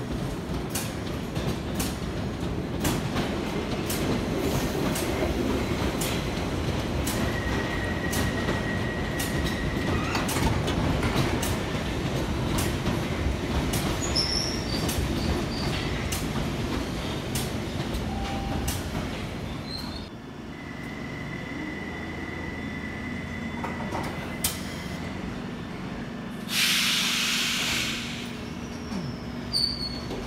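London Underground 1972 Stock Bakerloo line train running into the platform and slowing to a stand: a rumble of wheels on rail with many sharp clicks over the rail joints, and a steady high squeal that comes in twice. Near the end comes a loud burst of hissing air.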